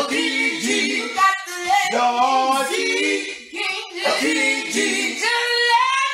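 A vocal group singing a cappella in close harmony: several voices move together in short phrases with no instruments behind them.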